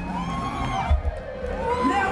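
Live rock band playing more softly, its drum beat mostly dropping out, while singers and crowd voices sing and call out over it.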